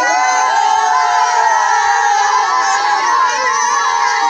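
A group of boys shouting and cheering together, many high voices overlapping in one loud, continuous din.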